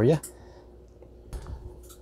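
A short clatter of clicks with a low thump about a second and a half in, and one more click near the end: a clear plastic snake tub being handled as one python is put back and the next taken out.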